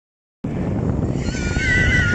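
A dog's high, slightly wavering whine, lasting about a second near the end, over a loud low rumble of wind on the microphone and splashing shallow water that starts about half a second in.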